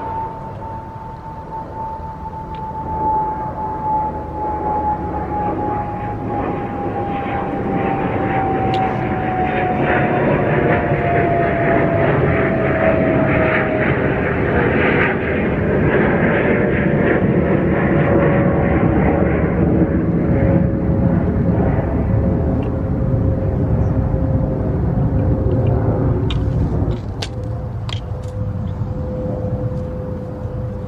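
A passing aircraft's engine drone. It swells to its loudest through the middle and drops off near the end, and a steady tone in it slowly falls in pitch over the first half.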